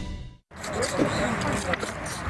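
Music cuts off about half a second in. Then come noisy, repeated sucking and slurping sounds of people sucking food out from between their fingers with their lips, with voices behind.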